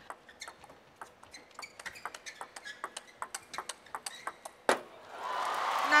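Table tennis rally: the plastic ball ticks off the bats and table in a quick, even run of strokes, ending in one loud crack about four and a half seconds in. Crowd applause builds near the end.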